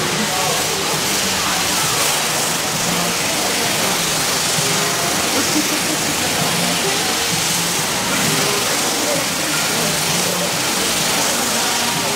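Water hose jetting water onto an elephant's back, a steady hiss that does not break, with people talking in the background.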